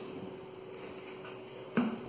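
Plastic shaker cup's screw lid being twisted open: quiet handling, then a single sharp plastic click near the end, over a faint steady hum.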